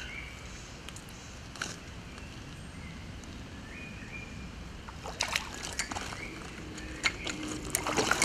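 Hooked rainbow trout splashing at the lake surface as it is played on a fly rod, in short bursts about five seconds in and again near the end, over a low steady outdoor background.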